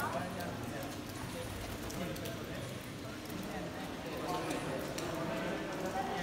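Indistinct voices of people talking, with a few light scattered clicks.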